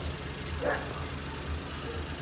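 Suzuki Every Wagon DA64W's small three-cylinder turbo engine idling with a steady low, pulsing rumble.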